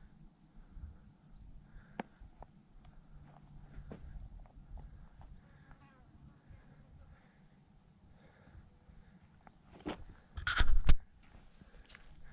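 Footsteps on a dirt and rock trail: faint, scattered scuffs and ticks over a low rumble, then a brief, much louder noise near the end.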